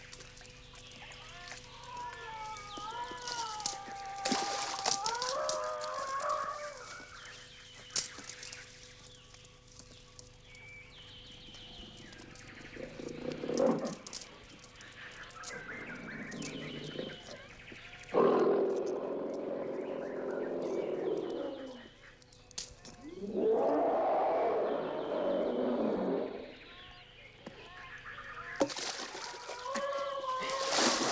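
Jungle animal sounds: warbling bird calls gliding up and down in the first few seconds, then a big cat snarling in several loud, rough bursts, the longest from about eighteen to twenty-two seconds in.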